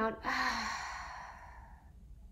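A woman's long audible exhale through the mouth, a deep guided breath out, starting loud and fading away over about a second and a half.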